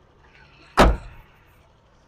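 A car door slamming shut once, about a second in: the front door of a Suzuki van being closed.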